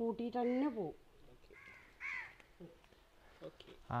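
A crow caws faintly in the background about two seconds in: one short, harsh call. Just before it, a woman's voice trails off.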